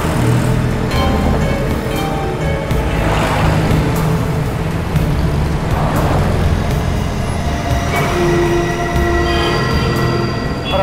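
Dramatic background score with a deep, steady low drone, mixed over the noise of heavy street traffic, with a few swells of noise.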